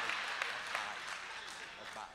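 Audience applause dying down, with a few scattered claps.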